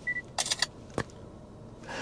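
A short beep, then a burst of shutter-like clicks and one sharp click about a second in, from the 2024 Mercedes-Benz E350's MBUX screen as its interior camera takes a series of still photos.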